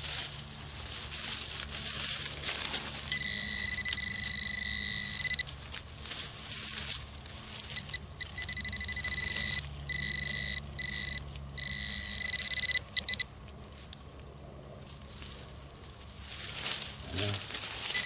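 Metal-detecting pinpointer sounding a steady high-pitched alert tone in stretches of one to two seconds with short breaks, signalling a metal target close by in the soil. Between and under the tones, a hand digger scrapes and crunches through pine needles and dirt.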